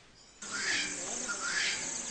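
Tropical forest ambience: a dense hum of insects with a bird calling again and again in short swooping chirps, cutting in suddenly about half a second in after near silence.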